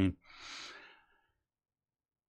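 A man's single breath between spoken phrases, soft and brief, in the first second.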